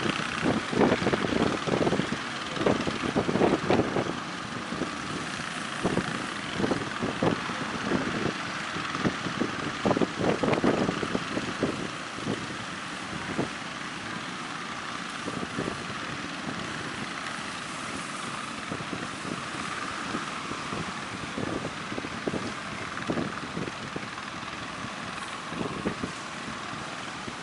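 Steady wash of breaking surf with wind gusting on the microphone. The gusts come in irregular buffets, heaviest in the first half, then the sound settles to a steadier rush.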